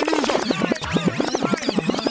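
DJ scratching on the decks: rapid back-and-forth scratches, several a second, each a quick rise and fall in pitch, with the bass line dropped out beneath them.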